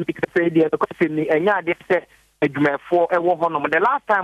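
A man speaking over a telephone line, his voice narrow and thin from the phone's limited bandwidth.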